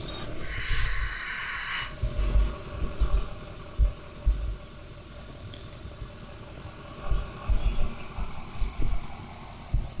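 Wind buffeting the microphone in uneven low gusts, with a short hiss in the first two seconds.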